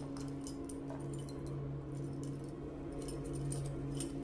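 Keys jangling and clicking at a door lock as it is being unlocked, in scattered light metallic clinks, over a steady low hum.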